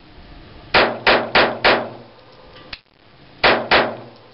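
Jennings J22 .22 LR semi-automatic pistol firing six shots: a quick string of four about a third of a second apart, then, after a pause of nearly two seconds, two more in quick succession.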